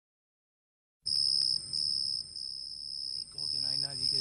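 After a second of silence, crickets trill steadily at a high pitch with short breaks, as night ambience in a track's intro. A man's voice starts speaking near the end.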